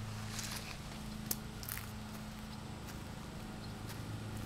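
A steady low hum under faint rustling, with one small click a little over a second in.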